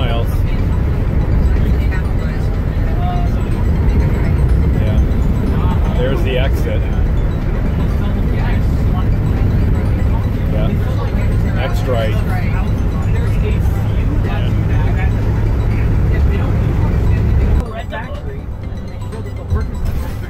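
Cab noise of a vintage Tiffin Allegro motorhome on a Chevy P30 chassis driving at highway speed: a loud, steady, low engine and road drone. The drone drops to a quieter level near the end.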